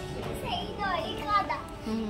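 Children's high-pitched voices chattering and calling out over background music.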